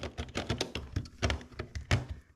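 White plastic double socket cover plate clicking and tapping against the socket mounting frames as it is pressed on by hand, a run of irregular light clicks with one louder knock near the end. The plate is not seating over the sockets; the fitter thinks a side screw is in the way.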